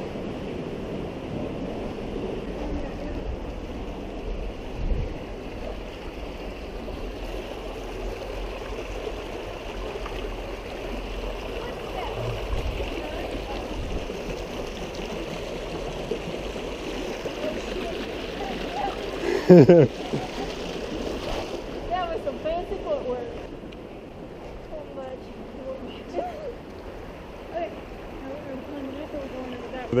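Steady noise of a shallow creek running over rocks, which grows fainter about three-quarters of the way through, with low buffeting on the microphone. A person laughs briefly about twenty seconds in.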